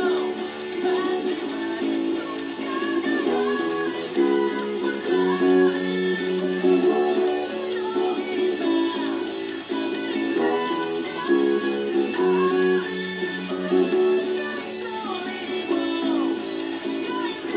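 Music played back from a recording over a loudspeaker: a song with bass guitar playing its notes.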